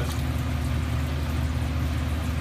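Water pouring from a pipe into an aquaponics fish tank, splashing on the surface, over a steady low motor hum.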